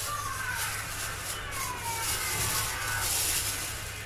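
A thin plastic bag rustling and crinkling as it is handled and emptied of rice over a plastic food container, with the grains pouring in.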